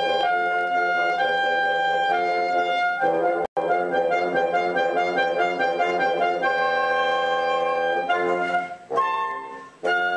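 Woodwind quartet with flute, clarinet and bassoon playing a classical chamber piece in held, overlapping notes. The sound cuts out for an instant about three and a half seconds in, and the texture thins and softens briefly near the end.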